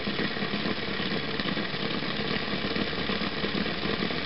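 Homemade Bedini SSG multi-coil radiant charger running, its four-magnet rotor wheel spinning past the coils with a steady, even mechanical whir while it charges a 12 V battery.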